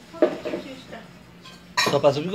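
Kitchen containers and dishes clattering as they are handled, with a short voice sound about a quarter second in and a person starting to talk near the end.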